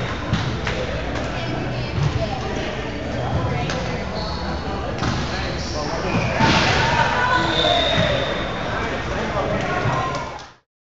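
Echoing gym noise during an indoor volleyball match: many players' voices and calls, with occasional ball thuds on the hardwood court. The noise swells about six and a half seconds in.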